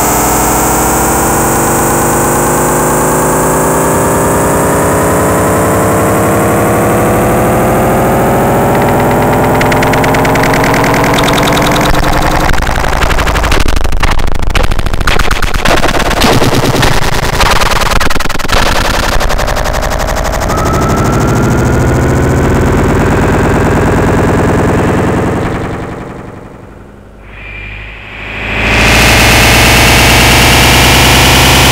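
Dense experimental analog electronic sound: a mass of rising pitch glides, breaking after about twelve seconds into a rapid stuttering rattle that lasts several seconds. It settles, dips and fades for a moment near the end, then comes back as a loud steady noise.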